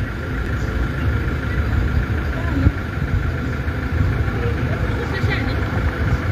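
Steady low rumble of outdoor background noise, with faint voices in the background.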